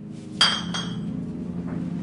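A single sharp glass clink about half a second in, ringing briefly with high bright tones. Low, steady background music plays underneath.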